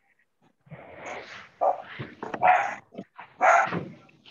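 A dog barking several times in short bursts, starting about a second in, picked up by a participant's microphone on the video call.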